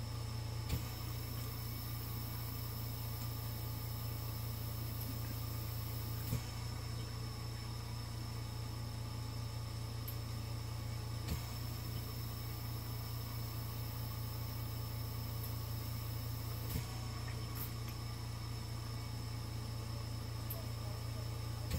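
Steady low electrical hum with a thin high whine above it, broken by a few faint clicks about five seconds apart.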